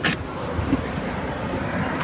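Steady road and tyre noise inside the cabin of a moving Mahindra Scorpio-N SUV, with a sharp knock right at the start.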